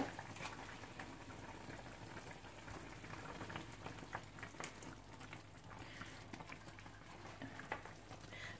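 Broth boiling in a frying pan on the stove: faint bubbling with scattered small pops.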